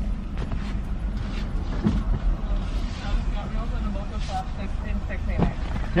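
Car engine idling, heard from inside the cabin as a steady low hum, with faint voices over it.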